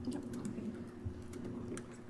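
Faint, irregular clicking of a computer keyboard being typed on, over a low steady hum.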